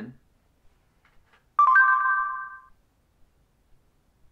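A phone's voice assistant app plays a short electronic chime through the phone's speaker after recognising a spoken command: a sudden chord of a few steady tones that fades out over about a second.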